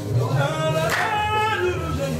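Gnawa chant: men singing a long drawn-out phrase together over the low plucked bass line of a guembri, with one sharp clap about a second in.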